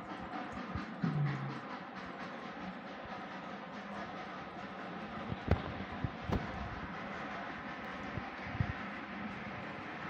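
Darjeeling Himalayan Railway toy train running, a steady hum with two sharp clicks a little past halfway.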